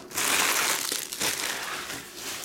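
Empty foil trading-card pack wrappers being gathered up and crumpled by hand: a loud crinkling and crackling that starts just after the beginning and dies down after about a second and a half.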